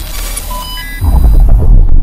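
News channel logo sting: a dense digital glitch-and-whoosh sound effect with a few short electronic beeps, then a loud, deep bass rumble about a second in.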